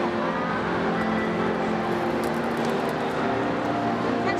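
Steady background hubbub of a large hall full of people, with a few faint clicks of small plastic parts being handled in the middle.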